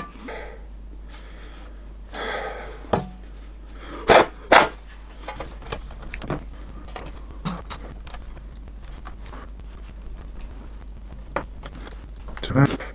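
A breathy rush of air, then two sharp clicks about half a second apart as the aluminium bottom cover of a MacBook Air is pressed down onto the laptop body, followed by a scatter of small handling clicks and taps.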